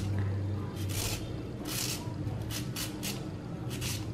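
Raw peeled beetroot being shredded on a plastic julienne grater into a bowl: a series of short scraping strokes, roughly one every half second, irregularly spaced.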